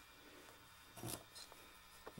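Near silence, with a brief faint scrape about a second in and a lighter rub just after, as a clear glass 'Warranted' flask is lifted off a hard floor and handled.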